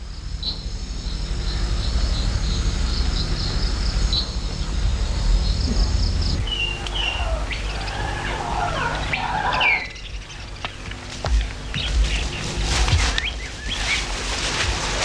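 Birds chirping and calling in short, quick notes over a steady low rumble of outdoor ambience. The calls are busiest in the second half.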